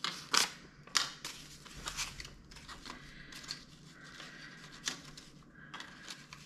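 Paper banknotes being handled and rustled against clear plastic cash sleeves, with a few sharper crinkles about half a second and a second in and another about five seconds in.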